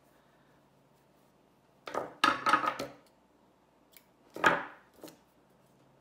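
Small metal scissors being handled and snipping yarn to finish off a crochet piece. There is a quick cluster of sharp clicks about two seconds in and a single louder click about four and a half seconds in.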